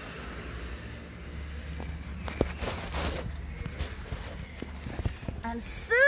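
A low rumble on a phone microphone, with scattered short knocks and rustles and a denser stretch of rustling about two to three seconds in.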